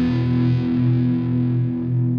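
Final distorted electric guitar chord of a rock song ringing out through effects, pulsing about two or three times a second as its high end fades away.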